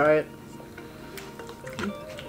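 Faint wet eating sounds with a few small clicks, over quiet background music.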